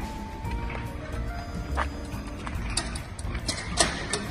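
Background music with held notes, over a low rumble and a few sharp clicks, the loudest click near the end.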